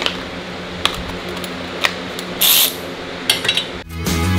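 Sharp metallic clinks of tools and hardware being handled at a car's wheel hub: a few separate clinks about a second apart and a quick cluster near the end, with a short hiss about two and a half seconds in, over a steady low hum.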